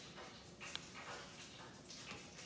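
Faint handling sounds of a metal spoon scooping salsa from a plastic tub, with a light click about three-quarters of a second in, over quiet room tone.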